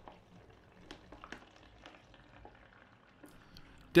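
Water poured from a plastic measuring jug into a plastic brew tub, heard faintly as a soft trickle with small scattered splashes and ticks.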